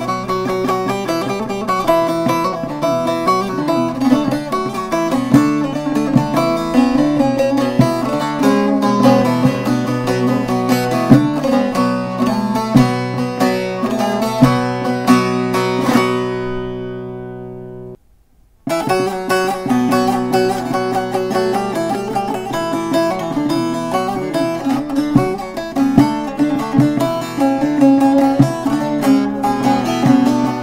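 Short-neck bağlama with a mulberry-wood body played with a plectrum: a fast folk tune that ends about sixteen seconds in, its last notes ringing out and fading. After a brief silence, a second short-neck bağlama of the same make starts the same tune.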